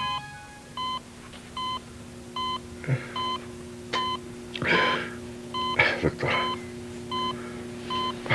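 Hospital patient monitor beeping steadily, one short beep about every 0.8 seconds (about 75 a minute), following the heartbeat of a bedridden patient. A few short breathy sounds from the patient come in between, around the middle.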